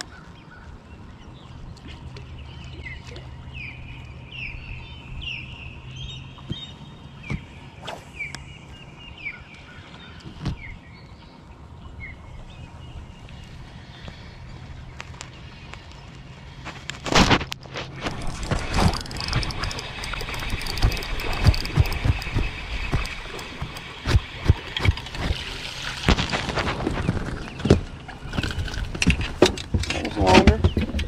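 Birds chirping over a low steady hum while a spinning reel is worked. About 17 seconds in comes a sharp knock, then loud clattering, rustling and splashing to the end as a small bass is fought and brought into the boat.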